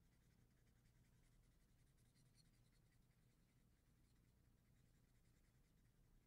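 Faint scratching of a felt-tip marker colouring in on paper in quick back-and-forth strokes, barely above near silence.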